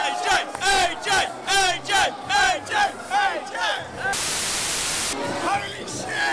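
A crowd of wrestling fans shouting in a rhythmic chant, about two shouts a second. About four seconds in, a one-second burst of static hiss cuts in and then stops abruptly.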